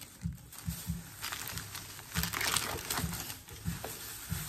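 Crinkling of a plastic-bagged sticker-label pack being handled and put down, in scratchy bursts that are loudest about a second in and again in the middle. Under it runs a faint, steady low thumping of music's bass from another room.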